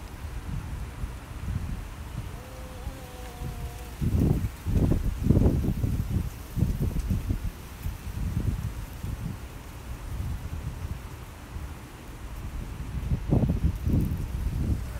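Wind buffeting the phone's microphone, a gusty low rumble that swells about four seconds in and again near the end.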